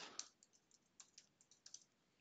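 A few faint, scattered keystrokes on a computer keyboard, some five or six short clicks with near silence between them.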